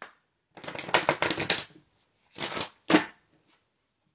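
A deck of oracle cards being shuffled by hand: a dense run of rapid card flicks lasting about a second, then two shorter bursts of shuffling near the end.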